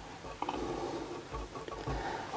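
Faint handling sounds of hands patting and smoothing loose synthetic fibres laid on a wooden shelf, with a light click about half a second in.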